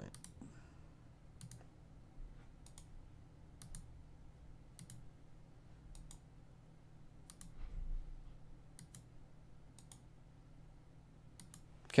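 Computer mouse buttons clicking faintly, about a dozen irregularly spaced clicks, as nodes are right-clicked and context-menu items picked. A faint steady low hum lies underneath.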